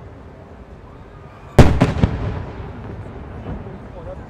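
Aerial firework shells going off: three sharp bangs in quick succession about a second and a half in, the first the loudest, each followed by a rolling echo that dies away.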